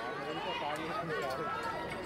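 Several men's voices shouting and calling over one another, driving on a pair of Ongole bulls that are dragging a stone block, with handlers' running footsteps on the dirt track.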